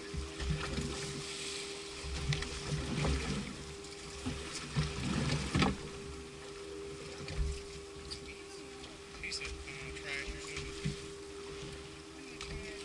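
Wind buffeting the microphone of an action camera mounted on a boat's outboard motor, in irregular low gusts, over a steady hum, with water lapping at the hull and a few small clicks and knocks.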